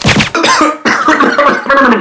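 A man coughing hard in a loud run of hacking coughs.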